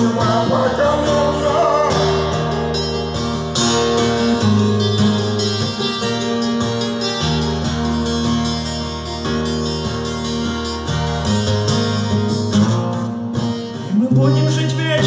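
Twelve-string acoustic guitar strummed in an instrumental passage, full chords ringing and changing every few seconds.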